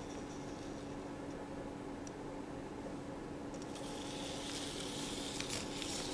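Faint, steady whirring of a Sphero Mini robot ball's motors as it rolls across a paper mat, over a low steady hum. The higher hiss grows a little louder past the middle, with a few faint ticks.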